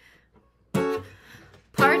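Acoustic guitar strummed: one chord about a second in that rings and fades, then a second strum just before the end.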